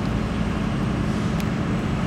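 Steady low rumble of vehicle noise, with a faint high whine and a single click about one and a half seconds in.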